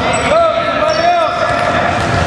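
Basketball game sounds in a large, echoing gym: sneakers squeak on the hardwood floor twice in short rising-and-falling chirps, with a ball bouncing and players calling out.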